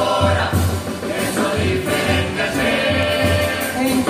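A murga chorus, a large group of young voices singing together in harmony, over a low pulsing beat.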